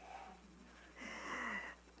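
Mostly quiet room tone, with one short audible breath from the speaker about a second in.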